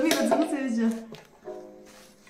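A voice calls out with falling pitch through the first second. About one and a half seconds in, a single plucked note from a Tibetan dranyen lute rings briefly and fades.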